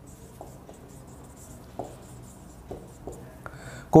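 Marker pen writing on a whiteboard: faint scratching strokes, with a few short, slightly louder strokes as letters are drawn.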